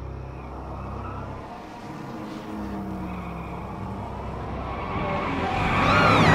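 Car engine running, its pitch gliding up and down, growing louder near the end as the car draws near.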